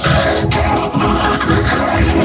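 Loud, dense music, electronically processed, with a sharp hit at the start and another about half a second in.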